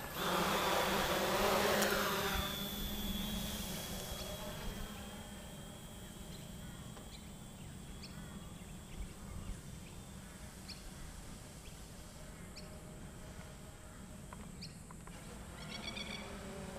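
Multirotor drone's electric motors and propellers buzzing loudly as it spins up and lifts off close by, then fading to a faint steady buzz as it climbs away overhead.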